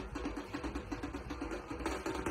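Fast, even drumming with a steady beat, about six or seven strokes a second, over a low rumble.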